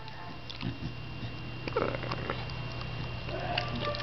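A beagle eating from a bowl: soft licking and chewing with small scattered clicks, over a steady low hum.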